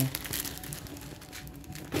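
Plastic courier mailer bag crinkling irregularly as it is handled.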